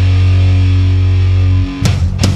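Heavy rock music: a held, distorted low guitar note rings steadily, then drum hits come in near the end.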